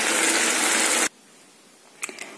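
Curry sizzling as it simmers in a non-stick pan, an even hiss that cuts off abruptly about a second in.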